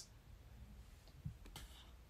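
Near silence with a few faint clicks, one slightly louder about a second in.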